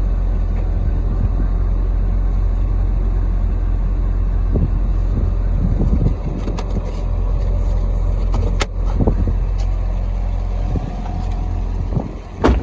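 A Corvette's 6.2-litre LS3 V8 idling steadily, a deep low rumble. A sharp click is heard about two-thirds of the way in.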